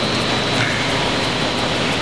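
Steady rushing background noise of an indoor swimming pool hall, water and echoing room noise, with a faint steady high-pitched whine over it.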